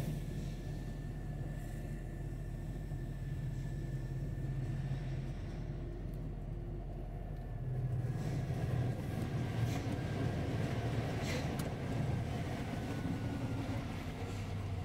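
Truck engine running steadily under way, heard from the cab, with a faint high whine above it. The engine grows louder about eight seconds in.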